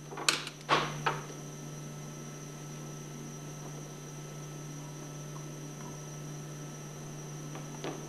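A few light knocks in the first second or so as a high-pressure packing cup is pushed into a brass pump head, then a steady low hum with a faint high whine.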